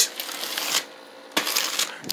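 A hand scratching and rubbing across a plastic sheet, making a crinkly scratching noise in two bursts, the second starting a little past halfway.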